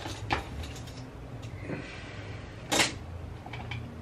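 A few faint knocks and handling sounds, with one short louder bump or swish about two and three-quarter seconds in, over a low steady hum in a small tiled bathroom.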